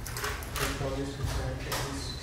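A person speaking into a microphone, heard over a PA, with a steady low hum underneath.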